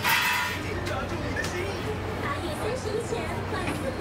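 Background chatter of several voices with street noise. A short, loud hiss-like burst comes right at the start.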